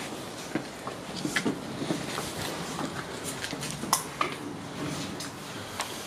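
Footsteps on a floor strewn with rubble and litter: irregular crunches, scrapes and clicks, the sharpest about four seconds in.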